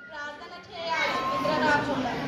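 Children's voices talking, quiet for the first second, then louder from about a second in.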